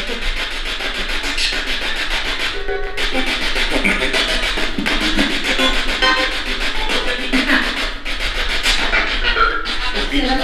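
Spirit box radio sweeping rapidly through stations: steady, fast-chopped static with brief fragments of broadcast voices and music, played as a reply to a question put to a spirit.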